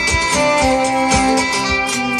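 Live folk band playing an instrumental passage: fiddle over acoustic guitar, with a steady beat underneath.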